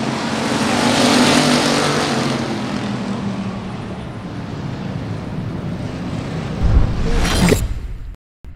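Dirt-track factory stock race car engines running, swelling as a car goes past and then fading. A sudden loud burst comes near the end.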